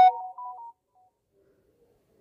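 Smartphone notification chime: a short run of electronic tones at a few different pitches, dying away within the first second, followed by near silence.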